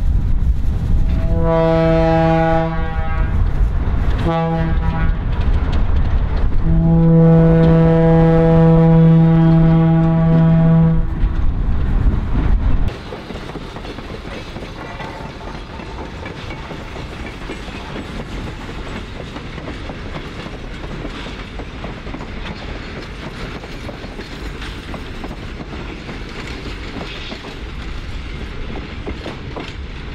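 Air horn of an Alco RS-2 diesel locomotive sounding a series of blasts, each a chord of several notes, the longest starting about seven seconds in and held for some four seconds, over the heavy rumble of the passing locomotive. About thirteen seconds in, the sound drops suddenly to a quieter, steady rumble and clatter of the loaded ore cars rolling by.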